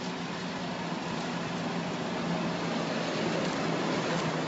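A motor vehicle engine idling steadily under a haze of street noise, growing slightly louder toward the end, with no distinct knocks or bangs.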